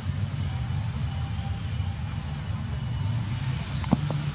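Steady low rumble of outdoor background noise, with a sharp click near the end.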